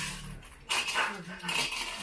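Light clinking and clatter of M&M candies and small glass bowls as the candies are picked up and dropped in one at a time, starting about two-thirds of a second in, with faint voices underneath.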